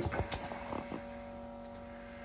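A few knocks and clicks as a wooden interior door is pushed open and the phone is handled, in the first second. After that, quiet room tone with a steady faint electrical hum.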